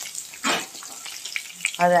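Tempering of dried red chillies, green chillies and dal sizzling in hot oil in a kadai, with small crackles. A steel spatula stirs through it, with one louder stroke about half a second in.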